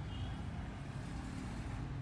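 A steady low background rumble with a faint, brief high-pitched chirp near the start.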